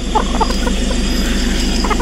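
Chickens in woven bamboo baskets clucking: short, soft clucks every few tenths of a second. Under them runs a steady low engine hum.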